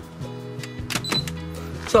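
A Launch Easydiag 2.0 OBD2 scanner is clicked into the car's diagnostic port and gives a short, high beep about a second in, the sign that it has powered up on the port. Steady background music plays underneath.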